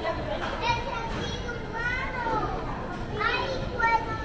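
A young child's high-pitched voice talking and calling out, with a couple of rising, sing-song calls, over the murmur of shoppers in a busy mall.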